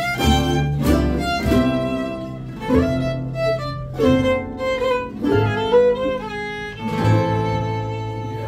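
Live acoustic string band: fiddle carrying the melody over acoustic guitar and upright bass. The tune comes to a close on a long held final chord about seven seconds in.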